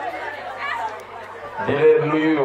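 A man speaking into a microphone, with background chatter and a steady low hum underneath. His voice grows louder near the end.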